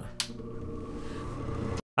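A click, then a gas furnace's draft inducer motor starting up and running with a steady hum that slowly grows louder. The sound cuts off abruptly just before the end.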